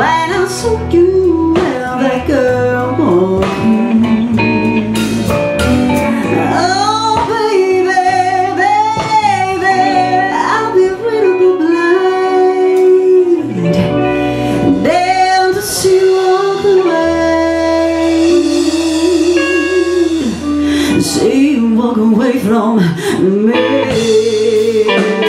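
Live blues band playing: a woman singing with a wavering vibrato over electric guitars, bass guitar and drums.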